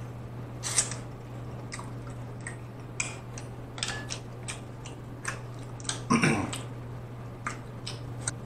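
Close-miked eating of a seafood boil: wet mouth clicks, lip smacks and chewing, with fingers sucked clean of sauce, and a louder smack about six seconds in. A steady low hum lies underneath.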